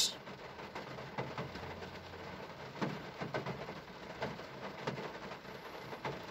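Quiet background noise, with a few faint, scattered ticks.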